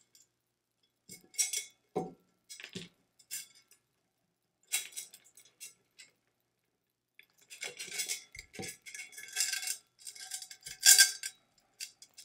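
Small metal chain links and clasps clinking as the chain is clipped onto a metal tumbler's hardware: a few scattered clinks, then a busier stretch of jingling in the second half, with a few soft knocks from the tumbler being handled.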